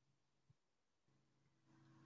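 Near silence: a pause between sentences of a recorded talk, with only a very faint hum.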